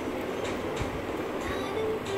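Steady low rumbling background noise, with a faint click or two.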